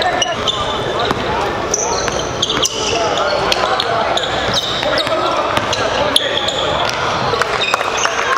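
Live indoor basketball game sound: a ball dribbling on a hardwood court, with short high sneaker squeaks several times and indistinct voices echoing through the gym.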